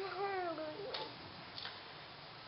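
A voice trailing off in one drawn-out tone with a slowly falling pitch, lasting under a second, then a faint click and quiet room tone.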